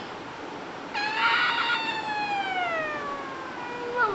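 A toddler's long, high-pitched vocal call, starting about a second in and sliding slowly down in pitch over about three seconds.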